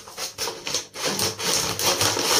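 Scissors cutting through a brown kraft-paper mailer bag in a quick run of rasping snips, with the paper crinkling as it is held. The cutting grows louder about a second in.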